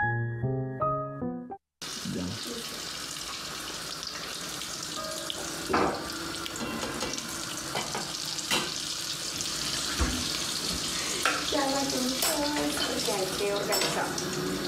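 Piano music ends in the first two seconds. Then stuffed potato balls (papas rellenas) deep-frying in hot oil in a pot make a steady sizzle, with a few sharper pops.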